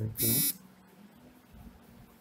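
A man's voice ends a spoken word about half a second in. After that there is only quiet room tone with a faint steady low hum.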